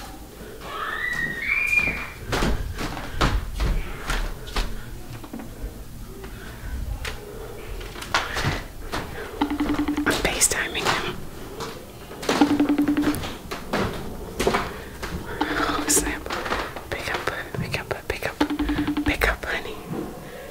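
A woman whispering, with a few soft knocks. In the second half a short low buzz repeats about every three seconds, like a phone vibrating with an incoming call.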